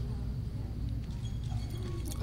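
A pause in speech holding only room tone: a steady low hum from the hall's sound system and faint background noise.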